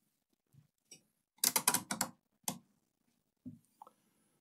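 Sharp clicks of a multimeter's rotary selector switch being turned through several detents, a quick run of clicks about a second and a half in and one more click about a second later, as the meter is moved from voltage to resistance/continuity for measuring a laptop's main power rail.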